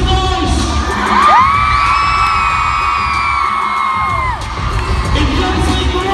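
Arena crowd noise over music playing through the venue's sound system. From about a second in, a long high note is held for about three seconds, gliding up at the start and falling away at the end.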